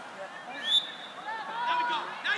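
Voices calling out across a soccer field, with a short, shrill referee's whistle blast about three-quarters of a second in, signalling the free kick.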